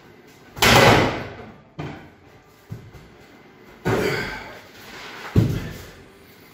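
Heavy thuds of a 110 kg atlas stone landing and being set down, one loud impact about half a second in, lighter knocks around two and three seconds, and two more heavy thuds near four and five and a half seconds.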